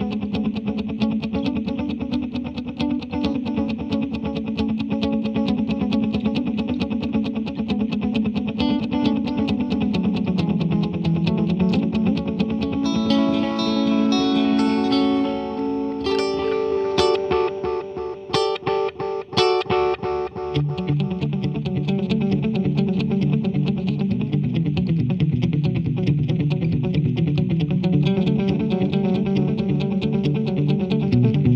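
Electric guitar played through a 1970s Electro-Harmonix Deluxe Memory Man analog delay pedal: a steady run of picked notes and chords. A little past the middle come a few hard-struck chords with brief gaps between them, then a lower riff.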